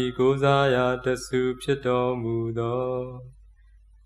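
A man chanting Pali verses in a level recitation tone on long held notes. The line trails off a little after three seconds in, leaving a brief pause before the next line begins.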